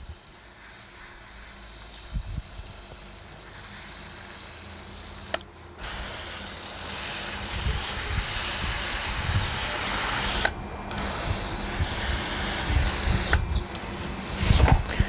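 Water spraying from a garden hose's pistol-grip nozzle onto the soil and leaves of potted plants: a steady hiss, louder in the second half, cut off briefly twice as the trigger is released, and stopping shortly before the end.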